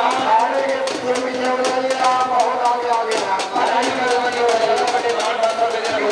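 Drum beats, several a second and somewhat uneven, under a man's long drawn-out calling voice.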